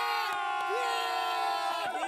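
A group of men shouting and cheering together in long, held yells, several voices overlapping at once, celebrating a win.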